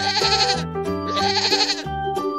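A goat bleating twice, each call lasting just under a second, over light children's background music.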